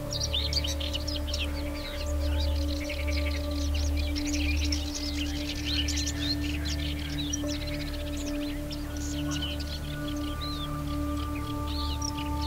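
Calm ambient music of long, held drone tones, with many small birds chirping over it throughout.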